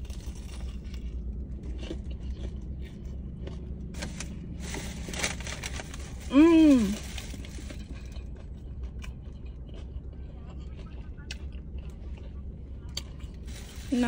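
A woman eating a sandwich in a car, against a steady low hum of the cabin: a food wrapper rustles with small scattered clicks, then about six seconds in she gives one short, loud vocal exclamation whose pitch rises and falls, a reaction to the first bite.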